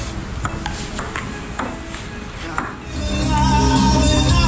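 Table tennis ball being hit back and forth: a string of light, sharp clicks from ball on paddle and table. About three seconds in this gives way to a louder live band playing.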